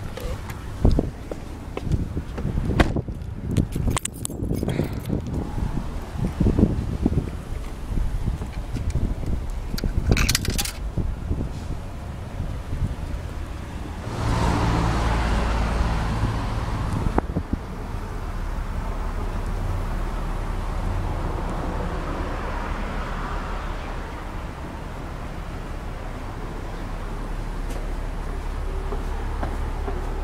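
Clicks and knocks of a car door being opened and handled, then a vehicle passing on the street about fourteen seconds in. After that a steady low rumble of city traffic runs on.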